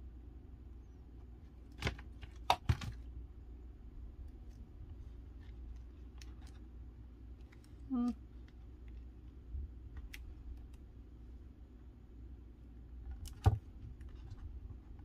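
Paper and chipboard scrapbook pieces being handled and pressed onto a layout: a few sharp clicks and taps, two close together a couple of seconds in and another near the end, over a low steady hum.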